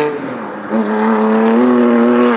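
Tuned, roughly 710 bhp BMW M2 Competition's twin-turbo straight-six under hard acceleration. The engine note dips briefly near the start, then climbs in pitch and holds.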